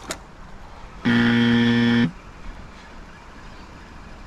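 A single loud, steady horn-like tone, about a second long, starting and stopping abruptly and holding one pitch throughout.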